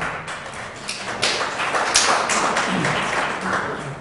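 Audience applauding in approval: a dense run of hand claps that builds a little about a second in and fades near the end.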